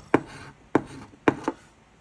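A coin scratching the latex coating off a paper scratch-off lottery ticket: four short, sharp strokes.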